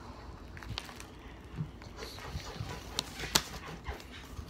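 Paper packaging being handled and unwrapped by hand, with light rustling and a few scattered small clicks; the sharpest click comes a little after three seconds in.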